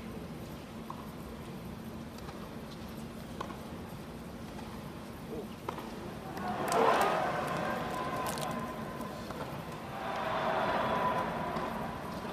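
Tennis match heard from high in a stadium crowd: a few faint racket-on-ball knocks over a low crowd murmur, then about six and a half seconds in the crowd cheers and applauds as the point ends, the loudest moment, fading and swelling again shortly before the end.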